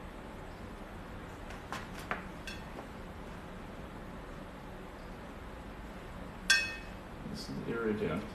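Paintbrush knocking against a ceramic plate used as a palette: a few faint clicks, then near the end one sharp clink that rings briefly.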